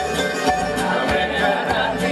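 Live Greek band music: bouzoukis, acoustic guitars, accordion, bass and drums playing together.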